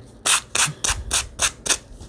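Foam sanding block rubbed in quick short strokes along the edge of a paper envelope covered in dried flower petals, sanding off the overhanging petal edges. The strokes start about a quarter second in and come about four a second.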